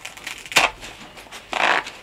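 Zipper on an inflatable lifejacket's cover being worked open by hand, with fabric handling and small ticks. There is a sharp snap about half a second in, the loudest sound, and a short rasp about three-quarters of the way through.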